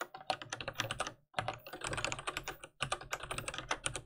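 Typing on a computer keyboard: quick runs of key clicks broken by brief pauses about a second in and again near three seconds.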